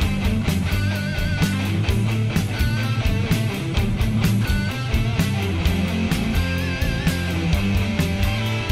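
Rock song with electric guitar, bass and a steady drum beat. A lead line plays held notes with vibrato over it.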